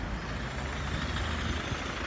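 Steady street traffic noise: a low, continuous rumble of road vehicles with an even hiss over it.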